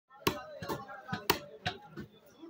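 Butcher's cleaver chopping beef on a wooden stump block: five sharp, uneven knocks in about a second and a half.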